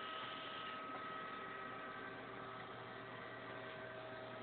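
Steady low electrical hum and hiss, with a few faint high tones held steady throughout; no distinct events.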